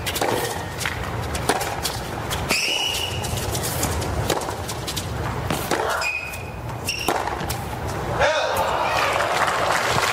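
Tennis rally on a hard court: a ball struck back and forth by rackets, sharp knocks every second or so, with brief vocal sounds in between.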